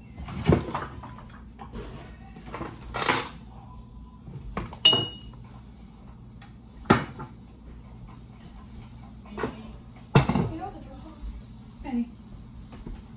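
Kitchen clatter: about six sharp knocks and clinks of pans, dishes and utensils spread over several seconds, one near the middle with a brief metallic ring.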